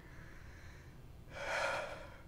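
A man's sharp intake of breath close to a microphone, starting about one and a half seconds in and lasting about half a second.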